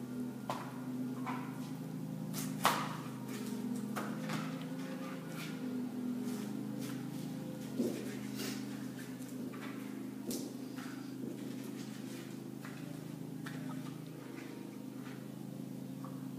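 Kitchen knife cutting fruit on a cutting board: irregular knocks and clicks of the blade against the board, the loudest about two and a half seconds in and another near eight seconds. A steady low hum runs underneath.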